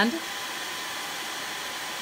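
Handheld blow dryer running steadily on chalk paste, drying the freshly applied layer.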